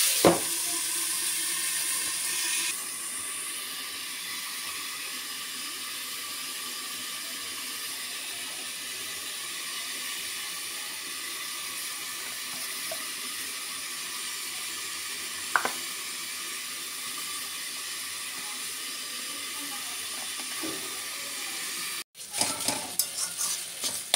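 Flat beans sizzling as they fry in a wok: a hiss that is louder for the first few seconds, then settles to a low steady sizzle, with a single click about two-thirds of the way in. In the last two seconds a metal spatula scrapes and clatters rapidly against the wok as the beans are stirred.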